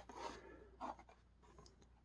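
Faint rubbing and scraping of a cardboard-backed plastic blister toy package being turned over in the hands, heard as two brief soft scratches.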